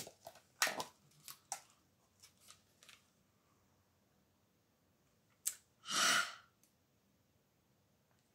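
Plastic Scentsy wax-bar clamshell being handled, a few small clicks and crinkles, then a sniff about six seconds in as the wax is smelled.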